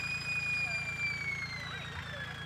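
Small tractor engine running at idle with a steady low pulse, over a high whine that starts to drop in pitch a little past the middle.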